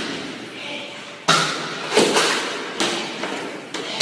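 A run of four sharp thuds, the first about a second in and then roughly one every second, each followed by a short echo in a large hard-floored hallway.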